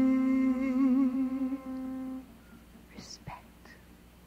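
A singing voice holds one long note that wavers in the middle and stops about two seconds in. The rest is much quieter, with a few faint short sounds.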